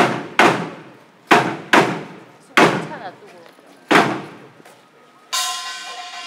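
Korean pungmul percussion starting up: six sharp, widely spaced strikes, each dying away, then about five seconds in a kkwaenggwari (small brass gong) sets up a continuous ringing.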